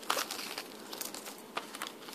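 Wrapping paper and curling ribbon being handled as the ribbon end is tucked under: soft crinkling and rustling with a few small sharp crackles.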